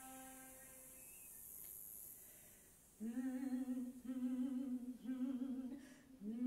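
A low flute note fades away, then after a quieter gap a woman's voice hums three short low notes about three seconds in, each sliding up into a held, slightly wavering pitch.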